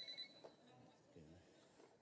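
Near silence, opening with the end of a phone's electronic ringing tone, a steady high beep that cuts off a moment in.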